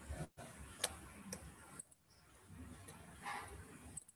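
Faint background noise over a video-call line, with two small clicks half a second apart about a second in. The sound briefly cuts out completely twice.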